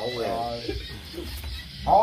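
People talking and exclaiming among themselves, a loud voice breaking in near the end, with music faint in the background.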